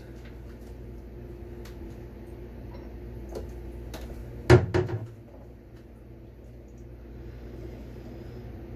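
A kitchen cupboard door shutting: one sharp knock about four and a half seconds in, with a few light clicks before it, over a steady low hum.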